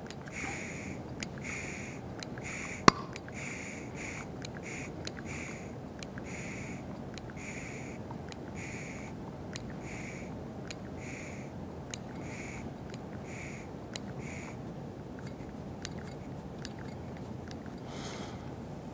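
Hand-held pistol-grip vacuum pump being squeezed over and over, about one and a half strokes a second, each stroke a short hiss of air drawn out of a long clear tube to lower its pressure; the strokes stop near the end. A sharp click about three seconds in.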